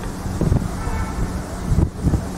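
Wind buffeting the microphone: an irregular, low rumble.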